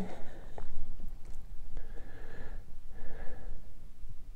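A man breathing close to the microphone in soft, evenly spaced breaths over a steady low hum, with a few faint clicks in the first second or so as a dial snap gauge is held against a workpiece.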